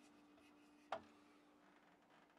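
A single sharp clink about a second in as an aluminium beer can is taken off a refrigerator shelf among other cans and bottles, over a faint steady hum.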